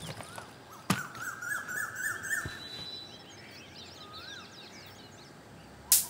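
Background birds chirping, many short repeated calls overlapping each other. A single sharp click comes about a second in, and another near the end.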